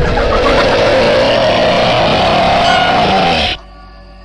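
Several chainsaws running loudly together in a dense, steady mechanical din that cuts off suddenly about three and a half seconds in.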